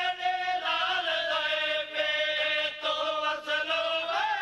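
Men chanting a Saraiki devotional qaseeda together, a sustained melodic line of long held notes that bend slowly in pitch.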